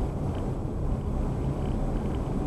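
Steady engine and tyre noise of a car being driven, heard from inside the cabin as a low, even hum and rumble.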